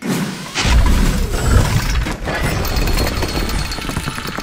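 Logo-reveal sound effect: a sudden hit, then about half a second later a loud, heavy low rumble that runs on.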